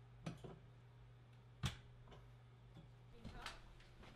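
Faint, sparse clicks and knocks of steel barn-door rail hardware as bolts are fitted by hand, over a low steady hum. The sharpest click comes a little over a second and a half in.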